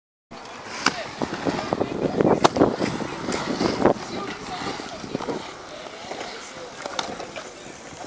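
Inline skate wheels rolling on a concrete skatepark surface, with a run of sharp clicks and knocks in the first half as the skater sets off, then a steadier rolling noise.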